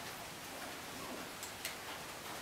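Quiet, steady room hiss with two light clicks close together about one and a half seconds in.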